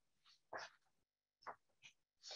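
Near silence, broken by three faint, short sounds about half a second, a second and a half, and just under two seconds in.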